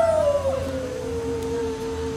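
A street singer's long wordless sung note, sliding down in pitch and then held, over a quiet sustained accompaniment note.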